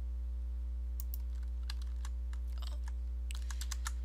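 Computer keyboard keys and mouse buttons clicking in scattered taps that bunch together near the end, over a steady low electrical hum.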